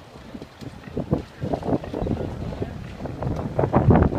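Wind buffeting the microphone of a handheld phone outdoors: irregular low rumbling gusts, heaviest near the end.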